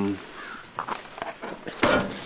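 Rustling and soft steps as a tent bag is lifted out of a car trunk, then one loud sharp thump near the end.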